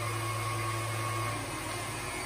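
KitchenAid stand mixer motor running steadily, driving the pasta roller attachment as a dough sheet is fed through. Its low hum weakens about a second and a half in.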